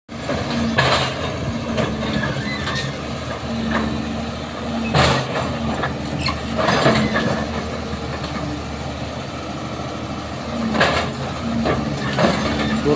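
Caterpillar 320C hydraulic excavator's diesel engine running steadily while it works its bucket on concrete rubble, with several short sharp noises over the engine, the loudest about a second in and about five seconds in.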